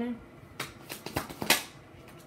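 A tarot deck being shuffled by hand: a quick run of card slaps and flicks, the loudest about one and a half seconds in.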